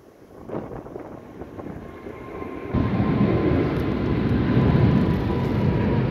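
A loud, steady low rumble of a vehicle crossing the bridge overhead. It builds over the first seconds, then jumps up suddenly about three seconds in and holds, with a faint steady whine above it.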